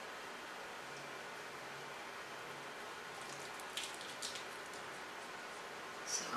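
Faint wet squishing of foam cleanser lather being massaged over the face with the fingertips, with a couple of soft squelches about four seconds in, over a steady hiss.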